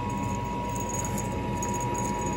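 Steady mechanical hum with a constant whine, and a few faint high clinks.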